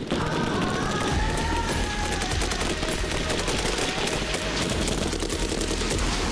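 Sustained volley of rapid, overlapping gunshots from several rifles and a machine gun firing at once during a squad live-fire drill.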